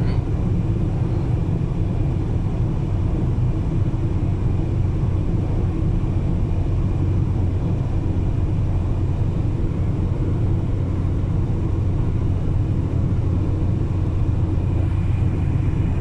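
Steady low rumble of a car driving on a highway, heard from inside the cabin.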